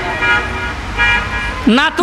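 A man's voice through a public-address loudspeaker: a drawn-out held tone trailing off with echo, then speech starting again near the end.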